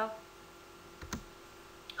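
A single sharp computer-mouse click with a low thump about a second in, followed by a smaller tick near the end, over a faint steady hum.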